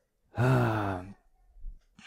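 A man's voiced sigh, close on a headset microphone, lasting under a second and falling slightly in pitch.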